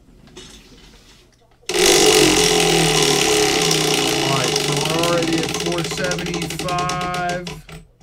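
Prize wheel spun by hand: its flapper rattles rapidly over the pegs on the rim, starting suddenly a little under two seconds in, then slows into separate clicks and stops near the end. A voice calls out over the clicking.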